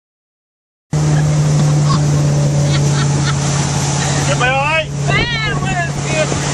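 Motorboat engine running at speed with a steady low drone over wind and water noise, cutting in abruptly about a second in. Voices cry out near the end.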